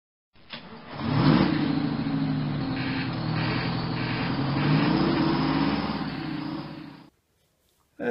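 Lorry engine revving, its pitch climbing about a second in and again around five seconds, then cutting off abruptly after about seven seconds.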